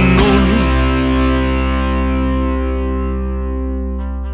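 A rock song's final chord: distorted electric guitar struck once just after the start and left ringing, fading slowly.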